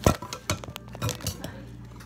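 Metal potato masher and utensils clinking and knocking against a glass mixing bowl as water beads are mashed: a series of sharp, irregular clinks, the loudest right at the start.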